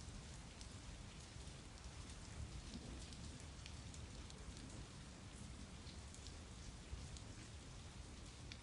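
Steady, faint rainfall, with single drop hits ticking here and there through the even hiss.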